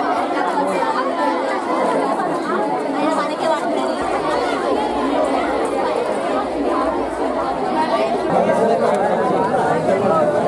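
Several people talking at once, loud overlapping chatter.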